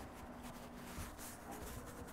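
Faint rustling and a few soft knocks over the quiet room tone of a hall, with a low steady hum.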